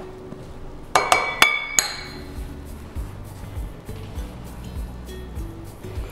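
Four quick, ringing clinks about a second in as a metal measuring cup is knocked against the rim of a glass mixing bowl to empty flour into it, followed by faint low bumps under background music.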